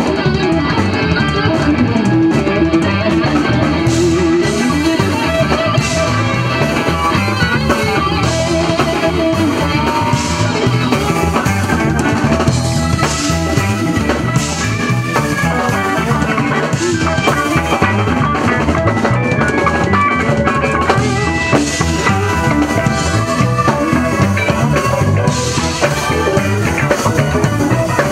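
Live band playing instrumental rock: a drum kit keeps a steady beat under electric guitars.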